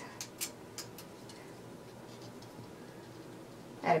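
A few light ticks and scratches from thin 26-gauge craft wire being handled as it is measured out, all within about the first second, then quiet room tone.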